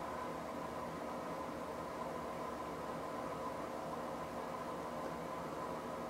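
Steady background hum and hiss, with no distinct sounds standing out: room tone.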